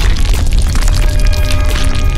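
Loud dramatic logo-sting music with deep booming bass hits and many sharp impacts. A held chord comes in near the end.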